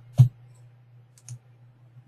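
Computer mouse clicks: one sharp click near the start, then two faint ticks later, over a steady low electrical hum.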